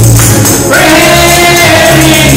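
Live gospel music: a band with bass and rhythmic percussion, with the singers' voices coming in about three-quarters of a second in.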